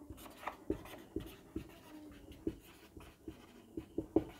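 Marker pen writing on a whiteboard: faint, irregular short strokes and taps as letters are written.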